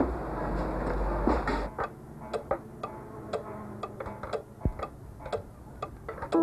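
Mechanical clocks ticking, several slightly out of step, about three sharp ticks a second, taking over after a steady rushing noise in the first couple of seconds. One dull knock sounds about halfway through.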